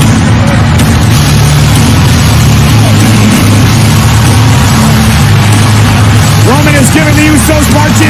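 Loud arena crowd noise over heavy, bass-driven wrestling entrance music. A voice starts yelling about six and a half seconds in.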